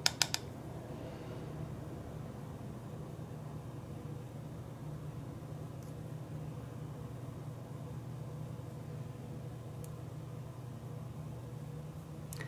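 Steady low hum of room noise, like a fan running, with a faint steady tone in it. Three quick sharp clicks right at the start.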